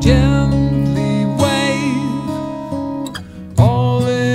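Acoustic guitar strummed under a man's singing voice, a slow melody with held, wavering notes; new strums come about a second and a half in and again shortly before the end.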